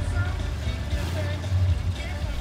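Datsun 1600 SSS's four-cylinder engine idling, a steady low rumble heard inside the cabin with the car standing still, with faint music under it.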